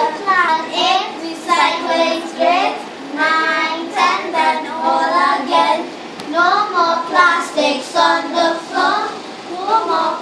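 A small group of children singing a simple, repetitive song together, with no instruments.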